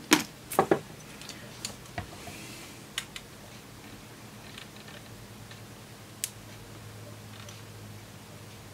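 Sharp clicks and snaps from steel diagonal side cutters working on the overmoulded plastic housing of a Lightning cable plug. There are three loud clicks in the first second, then a few scattered faint ticks.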